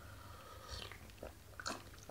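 A person drinking from a cup: faint swallowing and mouth sounds, with a couple of small clicks in the second half.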